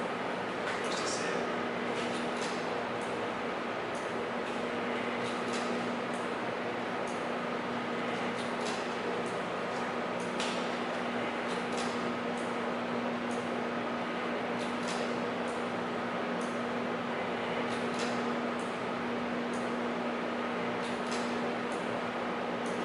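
A steady low hum over an even background rush, with scattered faint clicks and ticks.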